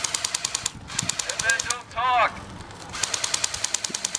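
Airsoft guns firing on full auto: rapid, evenly spaced shots, one burst at the start and another in the last second. Between the bursts a voice calls out briefly.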